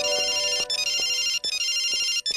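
Mobile phone ringtone: a high electronic melody of quick repeating notes, played in short phrases with brief breaks between them, signalling an incoming call.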